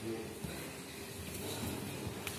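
Faint background voices and room noise in a large sports hall, a low, steady murmur with no distinct event standing out.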